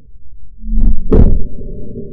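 Two sharp .22 long rifle pistol reports about a third of a second apart, about a second in, the second one the louder, over a low, deep steady rumble.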